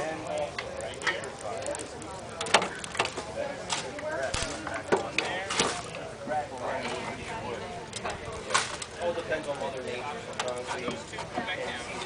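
Indistinct background voices talking throughout, with scattered sharp clicks and ticks as a soldering iron works against a copper roofing seam.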